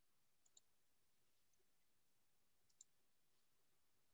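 Near silence, broken by three faint, sharp clicks: two close together about half a second in and one near three seconds.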